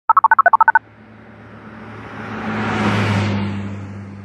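Touch-tone phone keypad dialing: about a dozen quick two-tone beeps in under a second. Then a whooshing swell of noise over a low hum, building to a peak about three seconds in and fading away.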